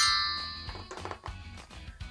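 A chime sound cue marking a page turn: a quick falling sparkle that settles into a bright ringing tone and fades over about a second, over soft background music.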